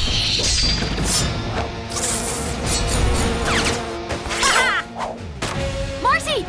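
Cartoon fight sound effects: a quick series of hits and crashes with whooshes, over action music.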